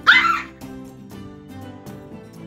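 A small dog gives one short, high yelp right at the start, over background music.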